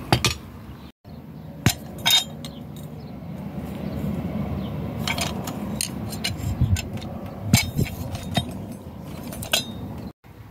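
Sharp metallic clinks and knocks, about a dozen spread irregularly, as a chrome-plated brass fitting and a pipe wrench are handled on hard ground, over a low handling rumble.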